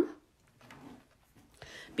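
Faint handling sounds of a paper trimmer being shifted on the desk: a soft scuff about half a second in, then a few light ticks.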